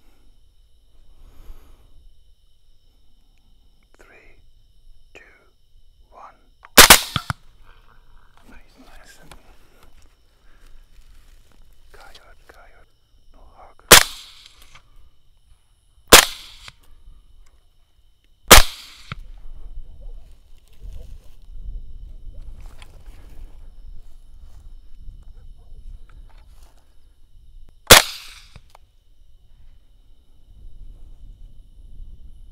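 Five rifle shots fired at wild boars: sharp reports about seven seconds in, three more within about five seconds around the middle, and a last one near the end.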